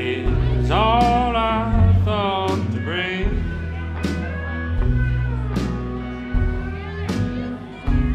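Country band playing live: pedal steel guitar, electric and acoustic guitars, upright bass and drums, with a melody line that slides and bends in pitch over a bass line that changes note about every second.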